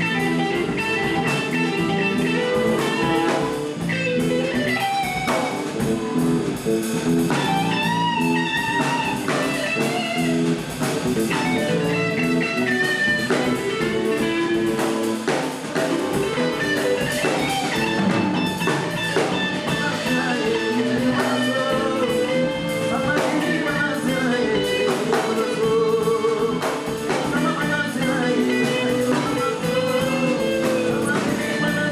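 A small band playing live: electric guitar and electric bass over a drum kit, with bowed strings gliding above.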